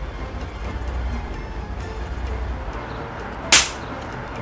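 A single sharp whoosh about three and a half seconds in: a swish transition effect over a fast blurred camera move. Under it runs a steady low rumble.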